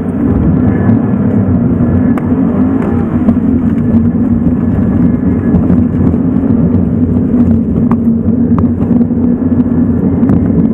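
Subaru BRZ's flat-four engine heard from inside the cabin, running under load as the car drives on ice on spiked tyres. The engine note is loud and steady, wavering a little in pitch about three seconds in.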